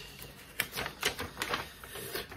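A sheet of paper stuck in a book's binding glue is peeled away and tears, crackling in a quick run of short ticks from about half a second in.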